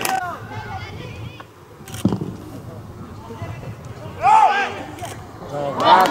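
Players calling out across an open football pitch, with one sharp thump of a ball being kicked about two seconds in. A loud shout comes a little after four seconds, and the voices swell loudly at the very end.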